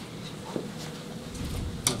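Quiet room tone with a faint steady hum, and a single sharp click near the end.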